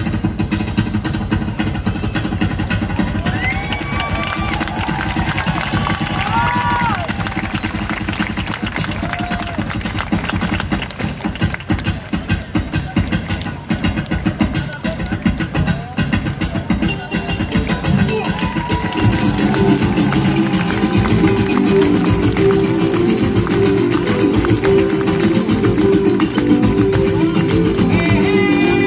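Live Mexican folk band playing, with strummed small guitars and a guitar over a keyboard, and voices over the music. The music gets louder and fuller about two-thirds of the way through.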